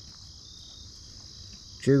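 Steady high chorus of insects, an even, unbroken buzz. A man's voice begins near the end.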